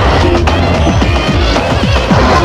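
Early-1990s eurodance/techno music from a DJ megamix: a continuous dance track with a steady beat and strong bass, and repeated short drum hits that drop in pitch.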